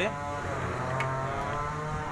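Kia Picanto's small four-cylinder engine idling steadily, its exhaust a bit 'brong', loud and boomy. A light click about a second in.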